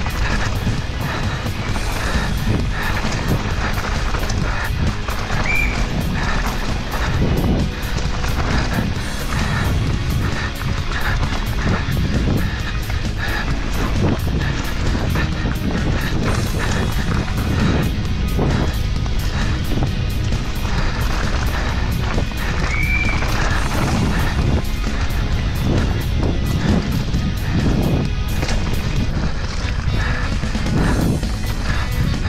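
Background music over the riding noise of a mountain bike descending a dirt trail: tyres on loose ground, knocks from the bumps and wind on the microphone.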